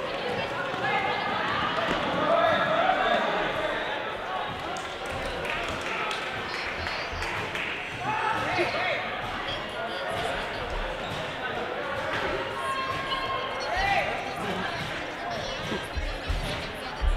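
Players and spectators calling and chattering in a gymnasium, with the thuds of a volleyball being bounced and struck now and then.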